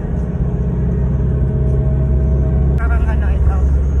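Low, steady engine rumble inside the cabin of an FX public-transport van. The engine note changes about three seconds in, and a voice speaks briefly near the end.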